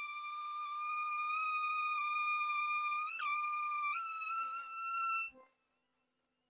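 A single sustained high synthesizer tone held as the music ends, drifting slightly upward, with a quick pitch blip about three seconds in and a step up in pitch a second later. It cuts off suddenly about five seconds in.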